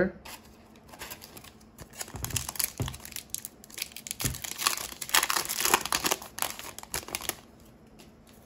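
Foil wrapper of a Yu-Gi-Oh booster pack crinkling and tearing as it is ripped open by hand, an uneven crackle that builds from about two seconds in and is loudest around the middle to late part.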